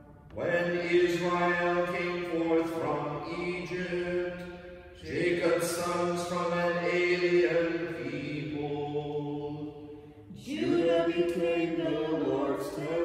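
Chanted singing of the Vespers psalmody: three sung phrases held mostly on one reciting tone, each starting after a short breath pause, about one every five seconds.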